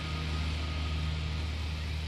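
A steady low hum under a soft hiss, with a short high chirp near the end.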